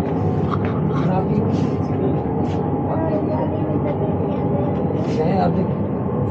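Indistinct talk among several people, not clearly spoken, over a steady low mechanical hum inside a passenger train carriage.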